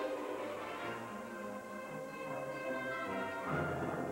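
Orchestral music, the pair's skating program music, swelling louder a little after three seconds in.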